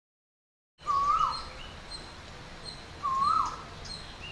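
Dead silence, then about a second in outdoor background noise cuts in with a bird calling: a short whistled note that rises and then dips, heard twice about two seconds apart, with fainter chirps from other birds higher up.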